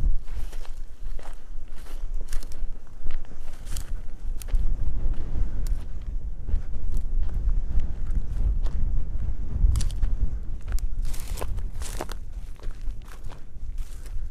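Footsteps over loose stones and dry, grassy ground, uneven and irregular, with scattered sharp scuffs and clicks over a steady low rumble.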